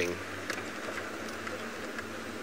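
Open game-viewing vehicle driving slowly along a dirt track: a steady low engine hum under a constant wash of tyre and wind noise, with a few light rattles.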